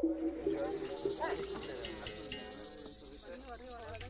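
Quiet background sound: faint voices and soft music under a steady hiss that comes in about half a second in.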